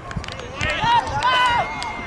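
Several voices of youth soccer players and spectators shouting and calling out across the pitch during play, in high-pitched overlapping calls, with a few short knocks.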